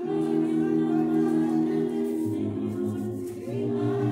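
Voices singing a hymn in slow, held chords; the chord changes about two seconds in.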